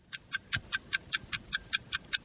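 Countdown-timer sound effect ticking steadily like a clock, about five sharp ticks a second.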